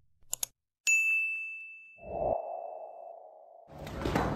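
Subscribe-button animation sound effects: two quick mouse clicks, then a bright bell-like ding that rings out and fades over about two seconds, followed by a lower swelling tone.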